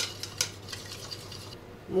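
An egg being beaten in a small bowl, the utensil clicking against the bowl's side several times before stopping about a second and a half in, over a steady low hum.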